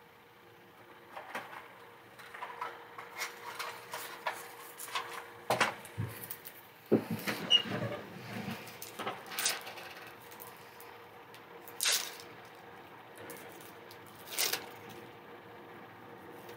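Scattered soft knocks and clicks at uneven intervals, handling noise rather than playing. They cluster about five to eight seconds in, with two more single knocks later on.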